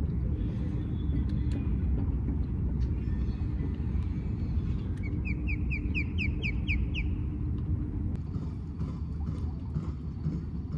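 Steady low rumble and hum of a small sailboat under way on an electric trolling motor, the hum stopping about eight seconds in. In the middle a bird gives a quick series of about ten rising chirps.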